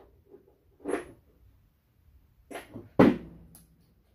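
A few short handling knocks and rustles as gloved hands pick up a magnet and small stove-switch parts. The sharpest and loudest knock comes about three seconds in.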